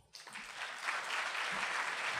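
Audience applauding, starting right away and building within the first second to steady clapping.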